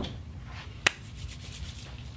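A single sharp click a little under a second in, over a low steady rumble of room noise.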